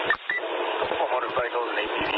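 Police radio scanner transmission: a dispatcher's voice coming through a narrow, tinny radio channel, reporting a group of motorcycles and ATVs fleeing southbound, with a short break just after the start.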